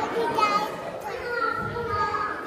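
Children's voices in a large hall, short talking or calling phrases rising and falling in pitch.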